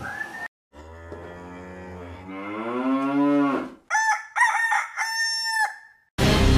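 A long, low farm-animal call that rises in pitch, followed about four seconds in by a rooster crowing, a broken cock-a-doodle-doo ending on a held note.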